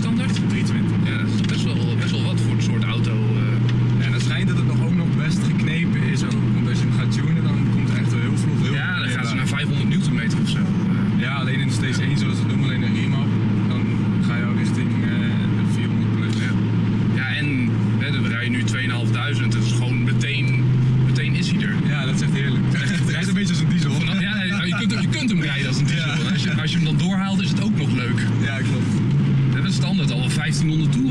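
Steady in-cabin drone of a Volvo C30 T5's turbocharged five-cylinder petrol engine at cruising speed, through a non-standard exhaust that makes its five-cylinder sound plain, over road noise.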